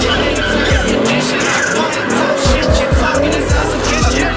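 Rap track with deep 808 bass kicks playing over a fourth-generation Chevrolet Camaro doing a burnout, its rear tyres squealing as they spin.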